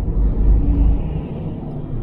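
Cabin road noise of a 2007 Toyota 4Runner V8 driving at speed: a steady low rumble with a fainter hiss above it.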